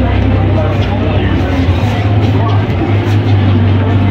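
Busy shopping-mall ambience: chatter of passing shoppers over a steady low rumble.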